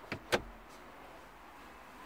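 Car glovebox lid being shut: two sharp plastic clicks a fraction of a second apart as it closes and latches, the second louder.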